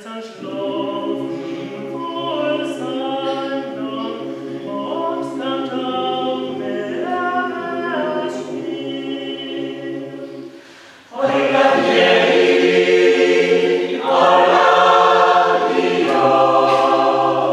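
Mixed choir of men's and women's voices singing a cappella in several parts, holding sustained chords. About eleven seconds in the singing breaks off for a moment, then comes back louder and fuller.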